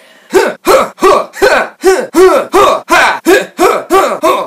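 A man's voice performing a character: a rapid, even string of short vocal bursts, about three a second, each rising and then falling in pitch.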